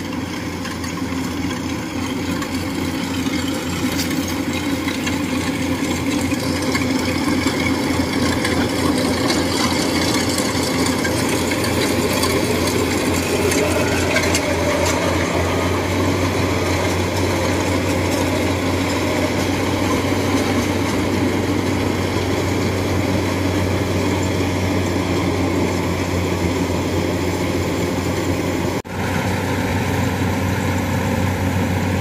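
Tracked rice combine harvester's diesel engine running steadily under load while it cuts and threshes standing rice. It grows louder over the first few seconds as it comes closer, then holds steady, with a momentary dip near the end.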